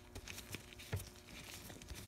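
Faint clicks and handling noise as an allen key turns the small B-spring pin on a Shimano Deore XT M735 rear derailleur, with a light rustle of nitrile gloves.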